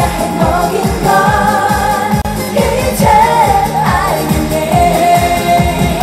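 A woman singing a Korean trot song live into a handheld microphone over a loud backing track with a steady dance beat.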